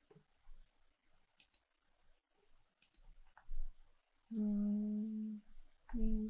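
A woman hums one steady closed-mouth "hmm" for about a second near the end, after a few faint clicks.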